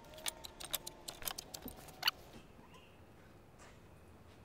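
Light, irregular clicks and taps of a tape measure and tool-belt gear being handled while stud positions are marked on a 2x4 bottom plate, ending about two seconds in with a brief squeak.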